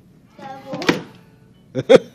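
A brief voice-like sound about half a second in, cut by a sharp knock, then two loud thuds in quick succession near the end.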